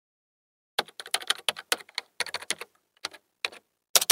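Computer keyboard typing: a quick run of key clicks that starts a little under a second in and goes on in short flurries with brief pauses.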